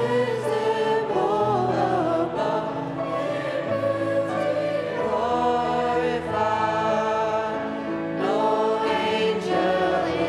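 Small mixed-voice vocal ensemble of six, three women and three men, singing a hymn-style song together in harmony into handheld microphones.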